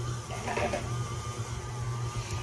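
KitchenAid Artisan stand mixer running steadily, its flat beater creaming sugar with cream cheese and butter in a steel bowl: a continuous motor hum with a faint steady whine above it.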